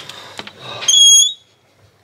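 White slatted window shutter pushed open: a click, a scraping rustle, then a short high squeal from its hinge about a second in, the loudest sound.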